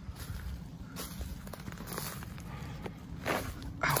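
Footsteps through leaf litter and undergrowth on a woodland floor, scattered light crackles and rustles, with a louder rustle shortly before the end.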